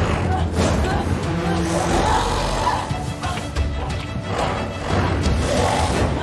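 Horror film soundtrack: a tense music score over a low rumble, mixed with a voice making sounds without words.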